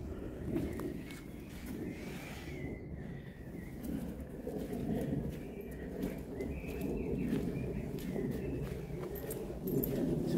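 Footsteps and rustling of someone walking an earth path through woodland, over a steady low rumble, with faint birdsong chirping above.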